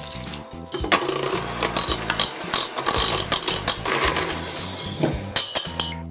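Electric hand mixer with twin wire beaters running in a stainless steel bowl, beating a thin batter of egg, sugar, butter and milk. It starts about a second in and stops shortly before the end.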